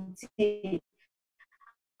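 A woman's voice speaking briefly over a video call, then cut to silence by the call's gating for the last second or so.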